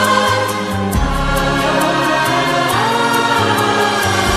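Hindi film love song playing: a passage without clear lyrics, with a sustained choir-like chorus over a stepping bass line.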